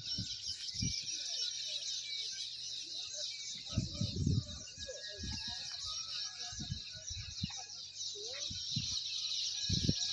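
A steady, dense, high-pitched chorus of outdoor chirping that does not let up. Several short, low, muffled thuds are scattered through it.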